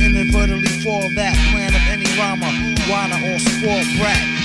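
Hip hop track playing: a beat with deep bass notes and repeating melodic figures, with rapping over it.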